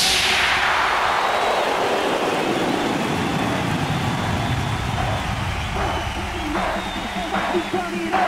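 Hardstyle mix in a breakdown: the kick and bass drop out and a noise sweep falls from high to low over the first couple of seconds, leaving a steady hissing wash. Short pitched vocal-like snippets come in near the end.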